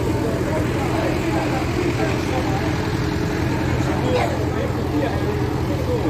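Fire truck engine running at a steady low drone, with people talking in the background.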